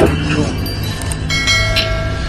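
A bell chime rings out a little past halfway through, over low, steady background music.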